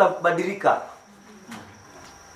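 A man's voice trails off in the first second, then a faint, steady high-pitched tone goes on in the background.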